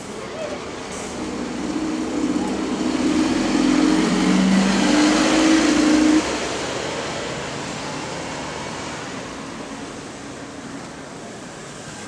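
Stagecoach London double-decker bus 15108 pulling away from a stop, its drivetrain whine getting louder for about six seconds, then dropping off suddenly and fading as it drives away.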